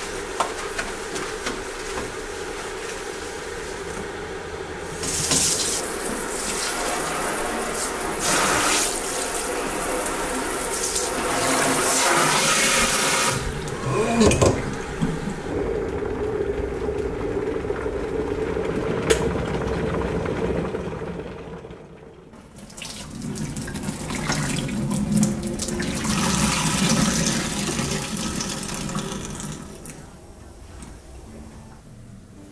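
Water pouring and splashing into a stainless steel kitchen sink as the sink is washed and sanitized. It runs in several stretches, with a few sharp clinks about 14 seconds in and a short break a little after 22 seconds.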